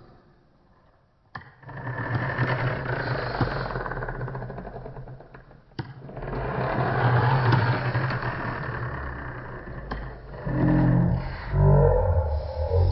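Toy bumper car's small electric motor whirring in two long spells, each starting with a sharp click, after a quiet first second. Near the end a short pitched, tune-like sound starts up.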